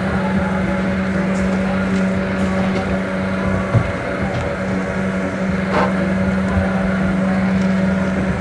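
A Spider amusement ride's machinery running with a steady hum. There is a brief knock just before the middle and a short click a couple of seconds later.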